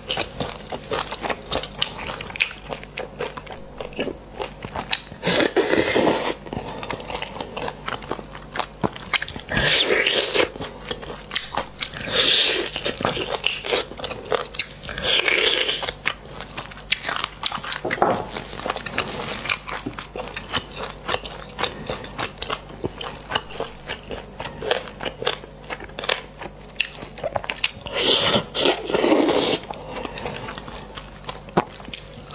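Close-miked eating sounds of spicy braised beef bone marrow: wet chewing and biting with many small smacking clicks, broken by several louder, roughly one-second bursts spread through.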